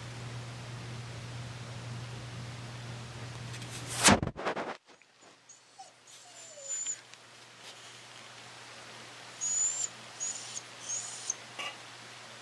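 A dog whining faintly in short, high-pitched whimpers. There is a loud knock about four seconds in, and a low steady hum under the first part that drops away after the knock.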